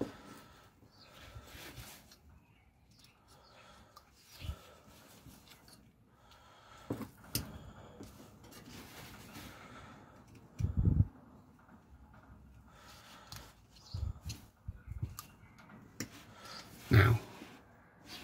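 A carving knife slicing and scraping shavings from a barked green-wood stick in short, faint cuts, with a few soft low thumps from the work in the hands, the loudest about 11 seconds in and again near the end.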